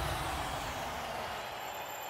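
Faint hiss that slowly fades away, with a few thin high steady tones in it: the tail of a TV advert's logo sound effect.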